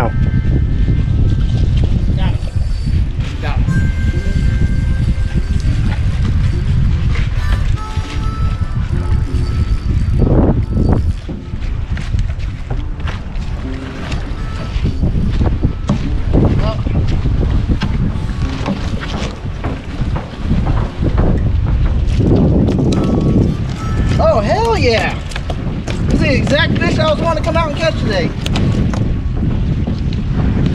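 Heavy wind buffeting the microphone, a dense low rumble throughout. Raised voices shout without clear words near the end, as a small queenfish is landed.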